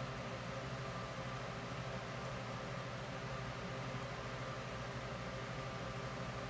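Steady hiss with a low hum, no separate sounds: the room tone of a small electric fan running.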